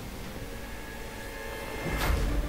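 Soundtrack of an animated fight scene: a steady rushing, engine-like noise with faint held tones underneath, swelling near the end.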